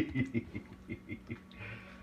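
A man chuckling: a run of short laughs that fade out over about a second and a half.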